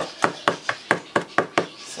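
Wooden spoon beating a runny batter of melted butter, sugar and eggs in a plastic mixing bowl, knocking against the bowl in a quick, even rhythm of about four strokes a second.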